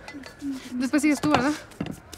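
Indistinct high-pitched women's voices in short bursts of talk, with a few light clicks and clinks in among them.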